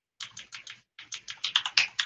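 Typing on a computer keyboard: a quick run of keystrokes, a short pause about a second in, then a faster burst of keys.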